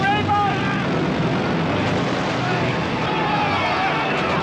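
Men yelling over the steady drone of a propeller aircraft's engines, with shouts near the start and again about two and a half seconds in.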